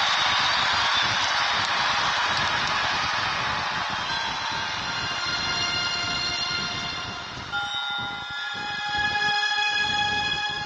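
A crowd applauding, the clapping thinning out over the first half while music with long held tones comes in and takes over in the last few seconds.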